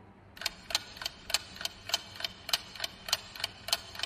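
Clock ticking sound effect as a quiz countdown timer, steady ticks about three times a second, starting about half a second in.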